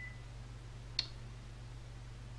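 A single sharp computer mouse click about a second in, over a steady low electrical hum.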